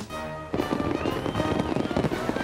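Fireworks crackling and popping over background music, starting about half a second in, with a thin whistling tone near the middle.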